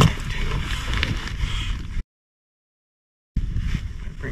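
Wind buffeting the microphone as a fluctuating low rumble with a light hiss. About halfway through, the sound cuts out completely for over a second, then the wind noise returns.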